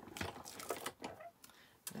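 Clear plastic cutting plates of a manual die-cutting machine being handled and lifted apart, giving a few light clicks and knocks, then a short lull before another click near the end.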